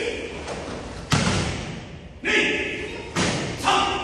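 Karate kata on foam mats: a bare-footed landing thuds onto the mat about a second in, after a jumping kick. Short, sharp vocal exhalations or shouts go with the strikes just after two seconds and again near the end, mixed with quick thumps of stamping feet.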